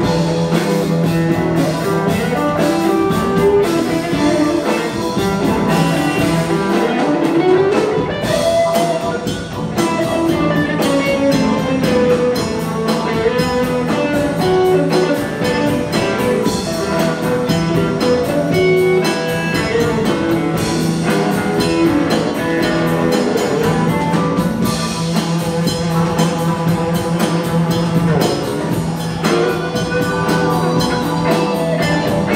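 Live band music: an archtop electric guitar plays a bluesy lead line through an amplifier over a steady drum beat and a sustained low note.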